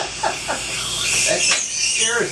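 Dental suction (saliva ejector) running in a patient's mouth: a steady hiss with wet gurgling slurps as it draws out water and saliva.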